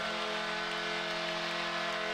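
Arena goal horn sounding one steady, held chord of several tones, starting abruptly, over a cheering crowd: the signal of a home-team goal.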